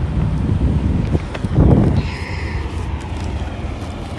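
Wind buffeting a phone's microphone outdoors: a low, unpitched rumble that surges in a strong gust about a second and a half in.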